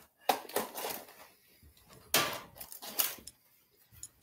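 Loose beads clicking and clattering against one another as a hand picks through them, in a few short bursts.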